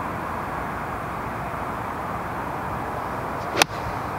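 A golf club striking a ball off the tee: one sharp click about three and a half seconds in, over steady background noise.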